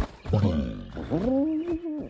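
Animated dragon (Night Fury) roar sound effect: a sharp hit at the start, then a pitched call that rises and holds for about a second before stopping at the end.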